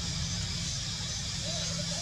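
Steady low rumble of a motor vehicle engine running nearby, under a constant high hiss, with a faint short call near the end.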